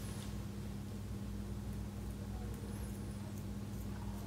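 A steady low electrical hum with faint background hiss; no distinct instrument sounds stand out.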